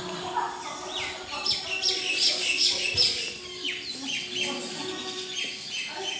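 Birds chirping and calling, a busy run of short, high, sweeping chirps that overlap, loudest in the middle.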